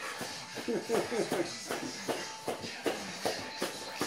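Bare feet thudding on a foam floor mat, about two or three irregular footfalls a second, as someone jogs in place. Faint talk runs underneath.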